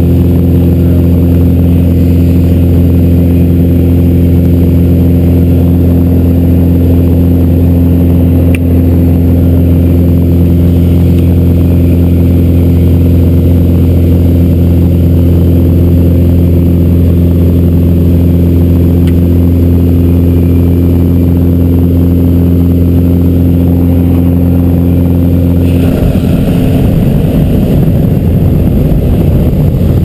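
Engine and propeller of a small jump plane droning inside the cabin, a loud, steady low hum with several held tones. Near the end the tones drop away and a rougher rushing wind noise takes over.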